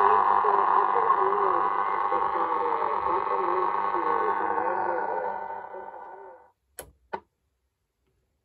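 Sailor 66T valve-free marine receiver playing noisy, muffled mediumwave reception through its loudspeaker, with a wavering tone in the hiss. The sound fades away as the volume is turned down about five to six seconds in, and two sharp clicks follow shortly after.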